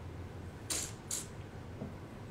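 Two quick, sharp slurps of bourbon sipped from a tulip-shaped tasting glass, about half a second apart, then a soft knock as the glass is set down on a wooden table near the end.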